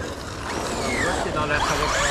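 Radio-controlled off-road cars running on loose dry dirt: a steady rush of tyre and gravel noise, with short motor whines rising and falling in pitch in the second half.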